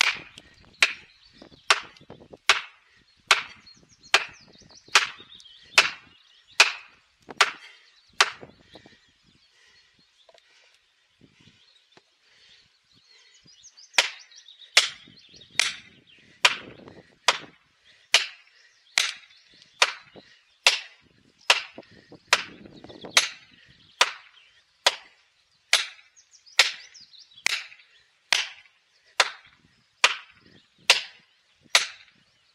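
Steady blows with the back of an axe driving plastic felling wedges into the back cut of a large tree trunk, about one sharp crack every 0.8 s, to tip the tree. The blows stop for about five seconds partway through, then resume at the same pace.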